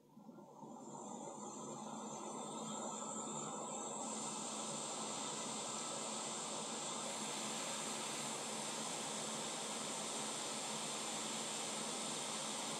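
Hot air rework station blowing a steady hiss of hot air onto a small capacitor on a laptop logic board, heating its solder to lift the part off. The hiss builds up over the first couple of seconds, then holds steady.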